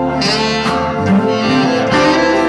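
Live blues-rock band playing, with a saxophone line prominent over electric guitars and keyboard.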